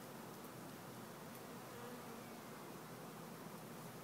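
Honeybee swarm buzzing, a faint steady hum.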